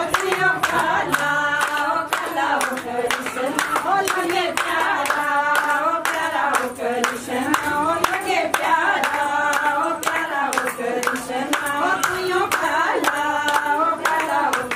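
A group of women singing a Pahari Krishna bhajan in kirtan style to steady, rhythmic hand clapping.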